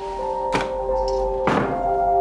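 A wooden panel door being pulled shut: a light knock about half a second in, then a louder thunk about a second and a half in as it closes. Sustained background music notes hold underneath throughout.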